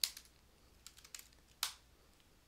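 Computer keyboard keys tapped a few times, faint and irregular, with one sharper key press about one and a half seconds in.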